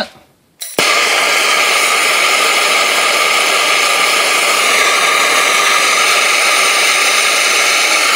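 Handheld blowtorch flame hissing steadily as it preheats an aluminum casting mold. It starts abruptly just under a second in and holds an even level throughout.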